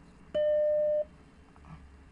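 Emulated Macintosh Plus startup beep: a single steady electronic tone lasting well under a second, signalling the emulated machine booting once its files have downloaded.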